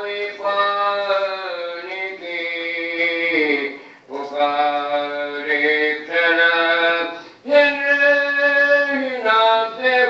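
A man's voice reciting soz, the melodic Shia mourning elegy, in long held notes. Each phrase slides down in pitch at its end, with breaks for breath about four and seven and a half seconds in.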